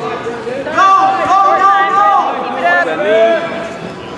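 People shouting from the sidelines: a long, drawn-out yell held on one high pitch starting about a second in, then a shorter shout near the end.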